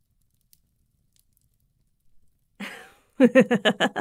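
A near-silent pause, then near the end a woman's short "ah" and a burst of rapid, pulsing laughter.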